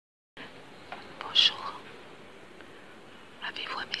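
Whispered speech over a low steady hiss, after a brief dropout at the very start: a short whisper about a second and a half in, then a woman starting to whisper 'Un message, s'il vous plaît' near the end.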